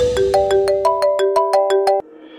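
Mobile phone ringtone: a melody of short marimba-like notes, about six a second, ringing for an incoming call and cutting off suddenly near the end when it is answered.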